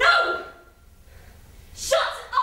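A person's voice in short outbursts: a loud voiced cry at the start, then a lull of about a second, then another brief, sharp vocal sound near the end.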